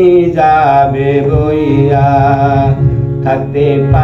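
A man sings a Bengali folk song in long, wavering, ornamented phrases, over sustained harmonium chords.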